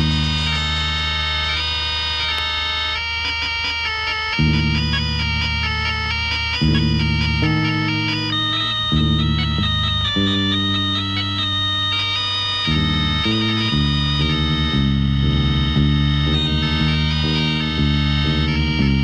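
Film background score for a suspense scene: long held high notes over a low bass line that moves in stepped notes, the bass notes changing faster and more choppily from about two-thirds of the way in.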